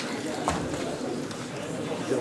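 A single sharp click about half a second in, as a push button on a small television set is pressed, over a low murmur of voices.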